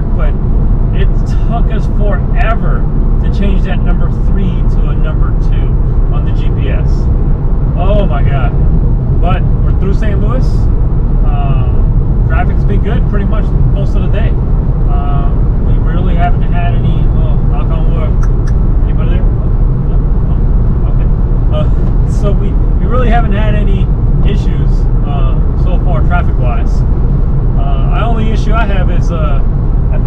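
Steady drone of a car's engine and tyres heard from inside the cabin at highway speed, with a man's voice talking over it.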